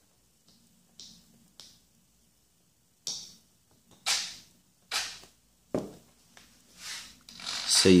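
About seven scattered sharp clicks and short rasps from handling an RC plane's battery connector and controls as it is powered up. No arming beep comes from the speed controller and no motor runs: the sign of a failed HobbyKing 60 A ESC.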